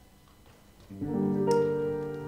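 Grand piano begins playing: quiet at first, then chords enter about a second in, with a louder chord half a second later that rings on.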